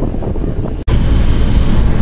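Wind blowing across a phone microphone on the deck of a moving ferry, over the low rumble of the ship. The sound cuts out for an instant just under a second in, then carries on.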